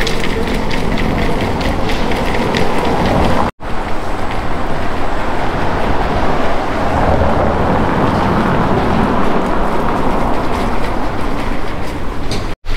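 Steady rattling rumble of small buggy wheels rolling over cobblestones, with a brief dropout about three and a half seconds in.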